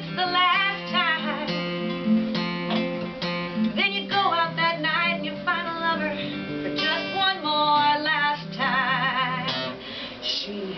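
Acoustic-electric guitar strummed in a song, with a singer's voice over it; a held note wavers with vibrato near the end.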